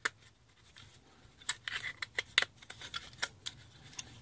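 Light clicks and scrapes of a Crucial BX100 2.5-inch SSD being slid into a metal laptop hard-drive caddy, a run of short sharp ticks starting about a second and a half in.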